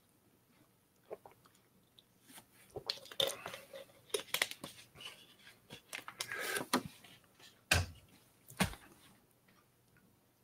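Thin plastic water bottle crackling and clicking as it is squeezed and handled during drinking, with two louder knocks near the end.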